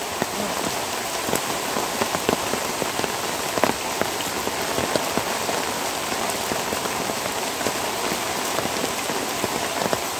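Steady rain falling, an even hiss with scattered sharp ticks of individual drops striking close by.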